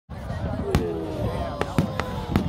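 Aerial fireworks bursting, with a sharp bang about three-quarters of a second in and two more close together near the end, over the voices of a crowd.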